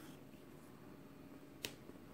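Very quiet handling of a bead-embroidered felt piece, with one short, sharp click about one and a half seconds in.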